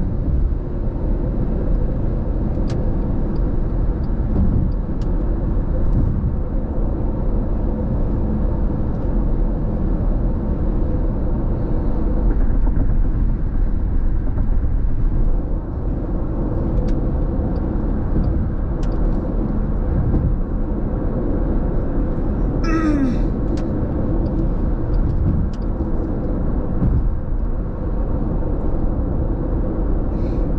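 Steady low rumble of road and engine noise heard inside a car's cabin at freeway speed. A brief sharp sound with a short falling pitch comes about three quarters of the way through.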